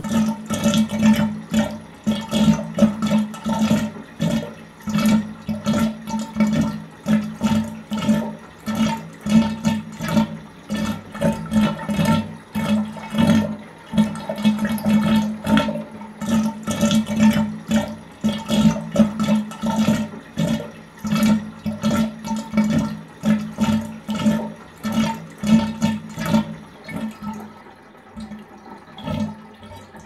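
Strummed string instrument playing a fast, even run of strokes on the same notes throughout, fading out near the end.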